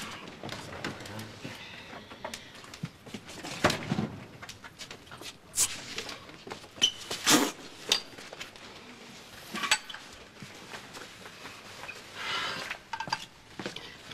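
Household handling sounds as a refrigerator is opened and a beer bottle and glass are taken out and carried: scattered knocks, clinks and clicks, with a few sharper ones in the middle stretch.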